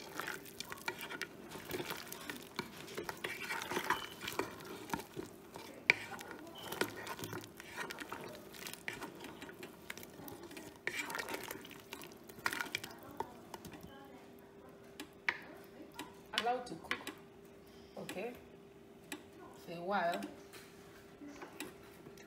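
Wooden spoon stirring soup in a metal pot, with frequent irregular knocks and scrapes against the pot's sides and bottom. A steady faint hum runs underneath.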